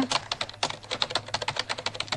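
Typing on a computer keyboard: rapid, irregular key clicks.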